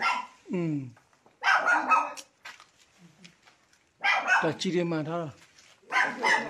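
A dog barking a few times among people's voices, with a short gap of quiet in the middle.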